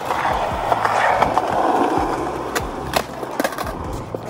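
A skateboard rolling, its wheels rumbling along the ground, with several sharp clacks of the board striking the ground in the second half.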